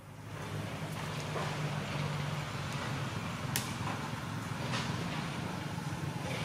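Steady low rumble of a motor vehicle engine running close by, with a single sharp click about three and a half seconds in.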